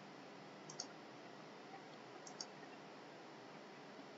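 Computer mouse button double-clicked twice, once just under a second in and again about two and a half seconds in, over a faint steady hiss.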